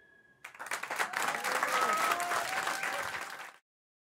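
The last note of the song dying away, then a studio audience applauding with a few whoops from about half a second in, cut off abruptly near the end.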